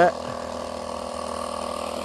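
A steady mechanical hum made of several constant tones, unchanging throughout.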